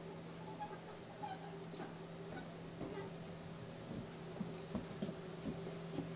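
Light knocks and creaks of someone climbing a wooden ladder while holding a camera, scattered and mostly in the second half, over a steady low hum.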